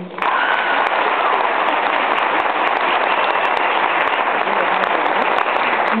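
Audience applauding: dense, steady clapping that starts abruptly just after the beginning and holds at an even level throughout.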